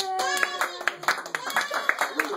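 A small group clapping and exclaiming in surprise at the reveal of a card trick, with one long drawn-out cry through the first second and laughter after it.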